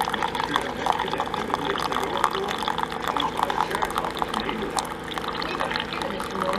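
A single-serve coffee brewer dispenses a thin stream of coffee into a ceramic mug, making a steady trickling, splashing pour. A steady low hum runs underneath.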